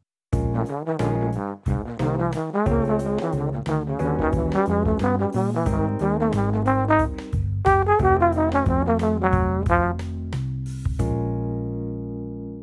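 Bach 36 tenor trombone playing a fast, arpeggio-driven bebop line of quick sixteenth notes that runs up and down through the chord tones, ending on a long held note near the end.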